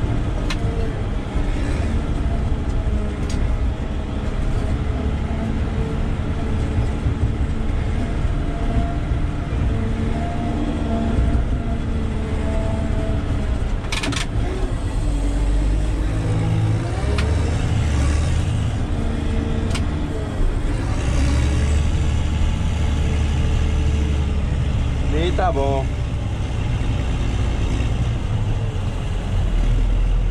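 Caterpillar 120K motor grader's diesel engine running in the cab, its revs rising and falling as the machine works and manoeuvres. A sharp knock comes about 14 seconds in, and a short rising squeal about 25 seconds in.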